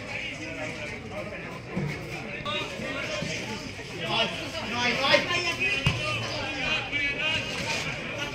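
Indistinct voices of players and spectators calling out and chattering around a football match, louder and more shouted in the second half. There is one short thump about six seconds in.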